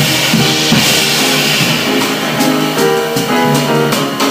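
Live jazz piano trio playing: drum kit with a bright cymbal wash in the first half and snare and bass-drum hits, over acoustic piano and upright double bass.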